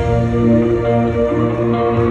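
Live band music in an arena: sustained synthesizer chords held over a low bass line, with no singing.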